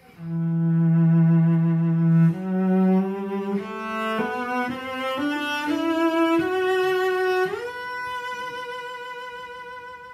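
Solo cello, bowed with vibrato: a long low note, then a line of notes climbing step by step to a high note that is held and fades away.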